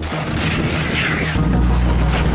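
Artillery firing: a loud, continuous rushing blast noise, with a low steady music drone underneath that swells about halfway through.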